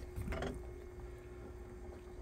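A spoon moving in a steel pot of boiling cassava chunks, with one short scrape about half a second in, over a faint steady hum.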